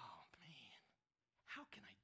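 Speech only: a man speaking quietly, two short phrases with a brief pause between.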